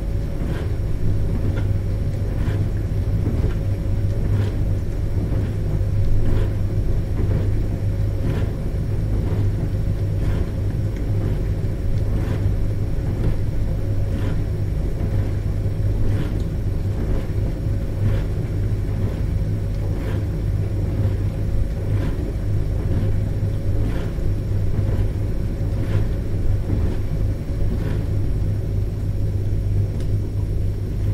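A dishwasher running: a steady low motor hum under spraying water, with a soft swish that repeats about once a second.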